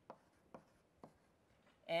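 Writing on a board during a lecture: three light taps of the writing tool about half a second apart, with faint scratching.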